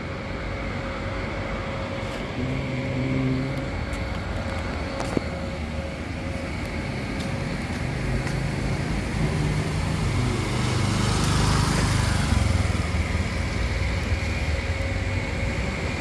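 Motorcycle engines running along a narrow lane. The hum swells and peaks about eleven seconds in as a bike passes close.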